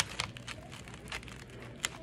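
Fingers and a fork pulling apart a breaded fried flounder fillet in a foam takeout container: faint crackling of the crust with a few sharp clicks, one right at the start and one near the end.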